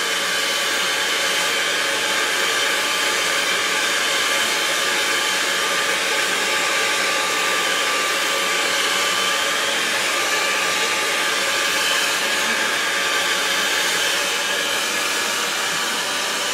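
Handheld hair dryer running steadily, blowing hot air into a plastic dry-cleaner bag: a constant rush of air with a faint motor whine.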